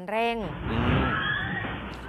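A car's engine and tyres, a rough rumble through a security camera's microphone, as the car speeds toward the shop front under full throttle after the driver's foot slipped onto the accelerator.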